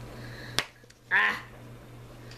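A single sharp click about halfway in, followed by a brief murmur from a woman's voice, over a steady low hum.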